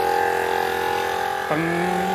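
Small portable plug-in tyre compressor running with a steady buzz, pumping air into a flat tyre.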